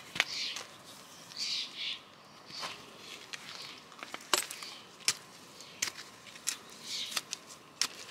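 Small garden hand trowel working loose soil: a few soft scrapes and a scattering of sharp clicks, several seconds apart.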